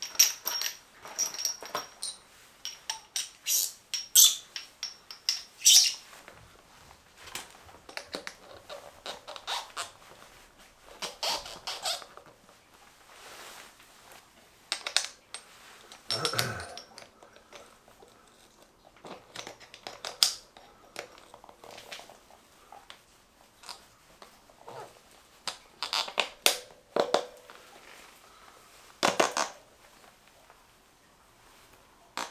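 Metal tyre levers being handled and pried between a motorcycle tyre's bead and its spoked rim: irregular clicks, clinks and scrapes with rubber squeaks, and a duller knock a little past halfway.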